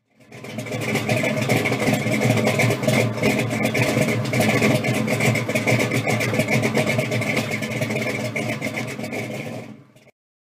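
Car engine running, with a dense, steady pulsing rumble. It fades in over the first half-second and cuts off suddenly at the end.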